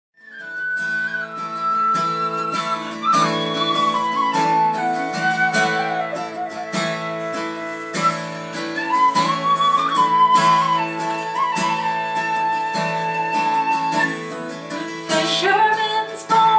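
An end-blown whistle plays a slow, flowing folk melody over a strummed steel-string acoustic guitar, with the guitar strummed about once a second. This is the song's instrumental introduction, ahead of the vocal.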